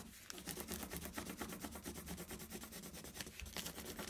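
Coloured pencil scribbled quickly back and forth on thin paper over patterned tape, pressed hard to bring the pattern through in a rubbing: a faint, rapid scratching of many short strokes.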